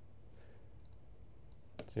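A few faint clicks of a computer mouse over quiet room tone, with a short group of clicks a little under a second in and another just before the end.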